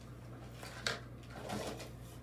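Hands rummaging in a clear plastic storage box of ribbon spools, with one sharp click about a second in and a short rustle after it, over a steady low hum.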